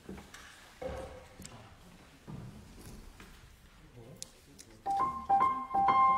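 A few soft knocks in a hushed room, then about five seconds in a small orchestra with piano starts playing, held notes sounding over the last second.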